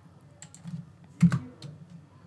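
Computer keyboard keystrokes: several light key clicks and one louder keypress about a second and a quarter in, as text in a form field is edited.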